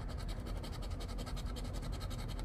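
A coin scraping the latex coating off a scratch-off lottery ticket, in quick, even back-and-forth strokes.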